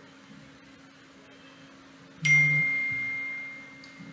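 A single electronic chime. One clear high tone sounds suddenly about halfway through and fades away over nearly two seconds, after faint room tone.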